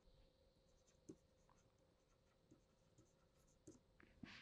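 Near silence, with a few faint taps and scratches of a stylus writing on a tablet screen.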